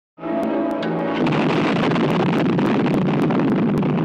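Film soundtrack: music comes in just after a moment of silence, and about a second in a loud, sustained explosion roar swells up and carries on. A faint, regular crackle of ticks from a damaged DVD rip runs through it.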